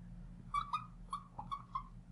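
Felt-tip marker squeaking on a glass lightboard while writing a word: about six short squeaks from about half a second in, over a faint low hum.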